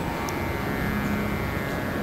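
Steady low rumble and hiss with a few faint held tones: background noise of the amplified stage microphones.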